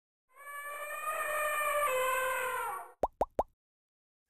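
Intro sound effect: a held, pitched tone lasting about two and a half seconds, then three quick rising plops in a row.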